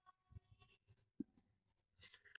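Faint sound of a marker writing on a whiteboard, with two light ticks, one about a third of a second in and one just over a second in.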